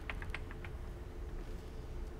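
A few faint sharp clicks in the first second, then a steady low mechanical hum. No scream from the whoopee cushion sealed in the vacuum chamber comes through: the release is too faint to hear from outside.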